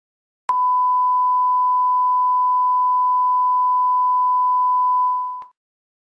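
A steady 1 kHz reference test tone, a single pure beep that starts abruptly about half a second in and lasts about five seconds before tapering off.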